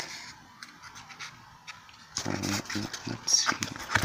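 Quiet at first, then from about halfway soft breathy murmurs and light clicks and rustling, as a homemade paper box is handled close to the microphone.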